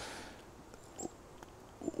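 A man's breath at a pause in speech: a soft exhale through the nose fading out, a small mouth click about halfway, and a short breath in just before he speaks again.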